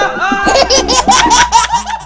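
High-pitched laughter in a quick run of short, repeated 'ha' bursts, growing denser about half a second in.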